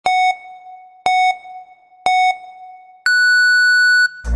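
Electronic countdown beeps: three short beeps one second apart, then one longer, higher-pitched beep, the pattern of a start-signal countdown.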